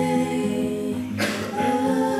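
A woman singing long held notes over a nylon-string classical guitar, with a short hiss a little past a second in.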